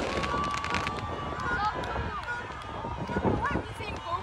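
A single firework crack at the start, then a few faint pops over the noise of an outdoor crowd. A long, thin, high tone runs through much of it, holding steady and then gliding up and down in places.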